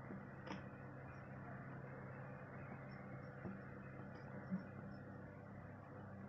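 Faint pencil writing on paper over a steady low hum, with a small tick or two.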